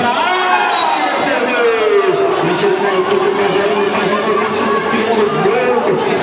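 Futsal crowd chattering and calling out, with a long steady held note running under the voices and a couple of sharp knocks.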